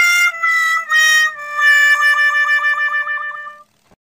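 Sad-trombone comedy sound effect: three short notes stepping down, then a long held note with a wobbling vibrato that fades out shortly before the end.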